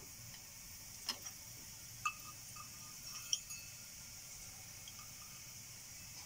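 Mustard seeds crackling in hot sesame oil in a stainless steel kadai during tempering. A few sharp pops come about a second apart, some with a small metallic ring from the steel pan, over a faint steady sizzle of the oil.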